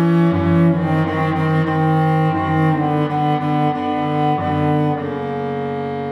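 Cello bowed in long, sustained notes that change pitch every second or two; the last held note fades away near the end.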